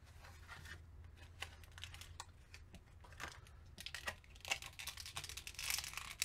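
Thin plastic toy packaging being handled and opened: a clear blister tray and a small plastic bag crinkling and crackling in the hands. Faint, scattered crackles that get busier over the last two seconds.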